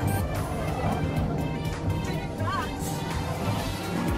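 Background music with steady held tones and bass.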